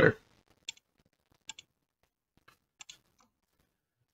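Faint computer mouse clicks: a single click, then two quick double clicks about a second apart.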